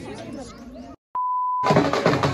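Voices chattering, then a sudden drop-out and a short, steady electronic beep lasting about half a second. Loud drum-led music starts near the end.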